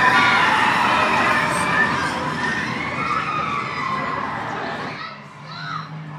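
Riders screaming as a train of an Arrow Dynamics suspended swinging coaster swings past, over the rumble of the train running on the track. It fades away about five seconds in.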